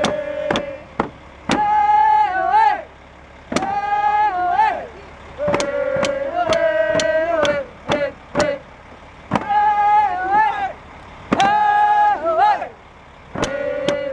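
Woman singing a hand-drum song in held, high phrases that dip in pitch at the end, over a steady beat on a rawhide frame drum.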